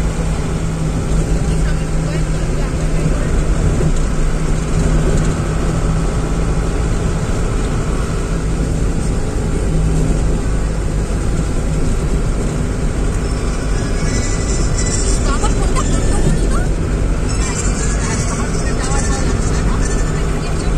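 Car driving along a paved road, heard from inside the cabin: a loud, steady rumble of road and engine noise with a steady low hum.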